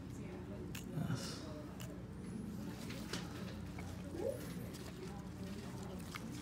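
Faint clicks of small dissecting scissors snipping tissue, a few scattered snips, over a steady low hum.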